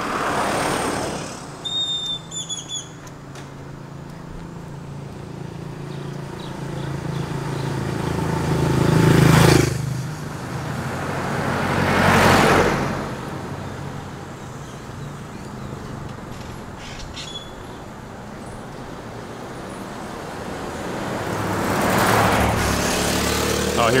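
Cars and SUVs driving past close by one after another, each engine and tyre noise swelling and fading. The loudest pass, with a strong engine hum, comes about nine seconds in and cuts off suddenly. Another follows a few seconds later, and a further one builds near the end.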